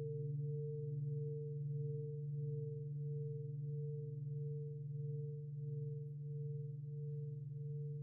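Large Japanese standing temple bell ringing on after a strike: a deep, low hum with a higher tone above it that pulses a little under twice a second as it slowly fades.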